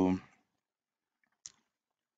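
A voice trailing off at the end of a spoken "so", then silence broken by one faint, short click about one and a half seconds in.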